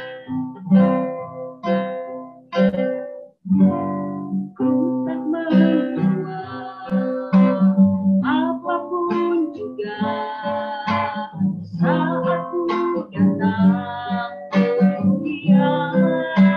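A woman singing a slow worship song to acoustic guitar accompaniment. For the first few seconds there are only plucked guitar chords; her voice comes in about four seconds in.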